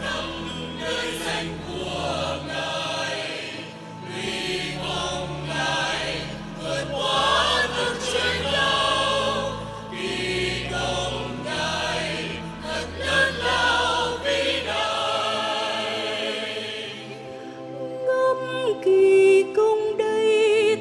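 Choral music: a choir singing, changing about three-quarters of the way through to a softer passage of held notes with a wavering melody line.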